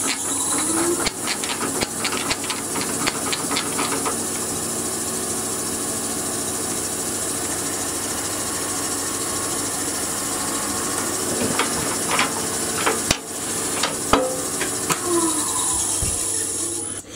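Wood lathe running steadily, a motor hum with a thin high whine, as the tailstock's dead centre is pressed into the end of the turning oak block to mark its centre. A run of light clicks comes in the first few seconds and again near the end.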